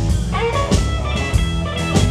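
Live blues band playing: electric guitars, bass guitar and drum kit, with a lead line that bends upward in pitch about half a second in.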